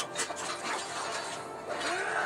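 Faint audio from an anime episode playing at low level: quiet music and effects, with a few soft clicks.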